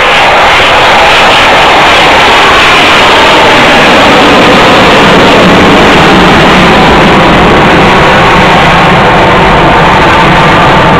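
Military jet aircraft flying low and climbing away, its jet engine noise very loud and steady, near the limit of the microphone.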